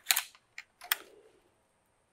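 A few sharp plastic clicks and a short rustle from handling the housing of a small bagged canister vacuum as it is turned over. The motor is not running.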